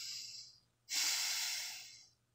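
A person breathing close to the microphone: two breaths, the first fading out about half a second in, the second starting about a second in and louder.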